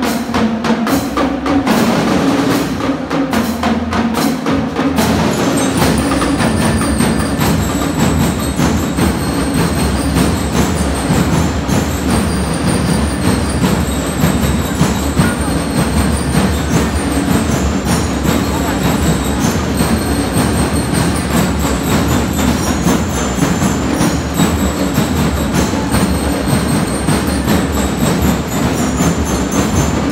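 Marching drum band playing live: crisp drum strokes, then from about six seconds in a high, bell-like melody over continuous drumming.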